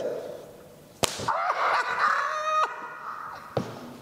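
A stretched elastic band snapping against skin with a sharp crack, followed by a drawn-out cry from the person hit, and a second, lighter snap near the end.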